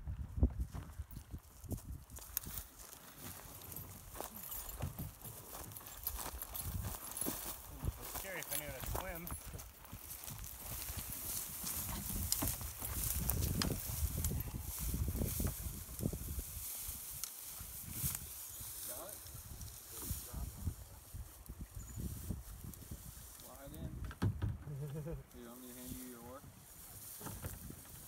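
Footsteps and rustling through dry grass: many irregular short crackles and brushes, with quiet, indistinct voices now and then.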